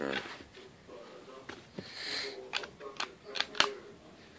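Handling noise on a phone lying by the bed: rustling and a run of sharp clicks in the second half, the loudest one just before the end, with a brief voice at the start.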